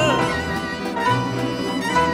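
Live orchestra with grand piano playing a short instrumental passage between sung lines of a French chanson, with violins prominent over a repeating bass line. A singer's held note slides down and ends right at the start.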